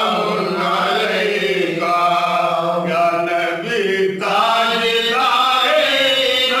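Men's voices chanting a devotional recitation in long, held sung notes, with a brief break about four seconds in.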